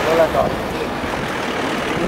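Several people talking at once, the voices overlapping and unclear, over a steady hum of street noise.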